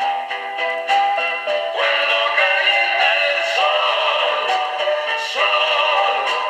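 A 1960s pop record with sung vocals playing through the small built-in speaker of a Penny 'Borsetta' portable record player, sounding thin with no deep bass.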